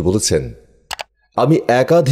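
Narration in Bengali, broken by a short pause about a second in, in which a quick double mouse-click sound effect sounds.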